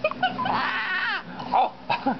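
Baby cooing and squealing: a few short high-pitched vocal sounds, the longest about half a second in, sliding up and down in pitch.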